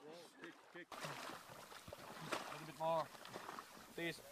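Faint voices over a low, even background hiss, with one short spoken sound about three seconds in.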